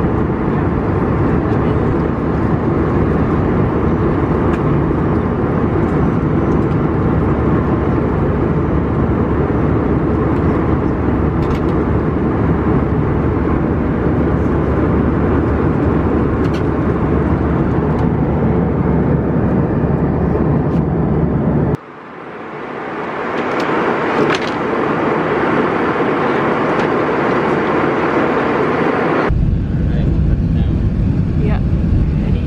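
Steady rumble of a jet airliner's cabin noise in flight, engines and airflow. About three-quarters of the way in it cuts abruptly to a thinner, quieter hiss, and near the end a loud rumble returns as the plane rolls down the runway after landing.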